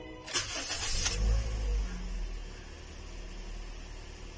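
A 2015 Toyota Corolla's 1.6-litre four-cylinder engine is cranked by the starter for under a second, catches, flares up in revs, then settles to a steady idle.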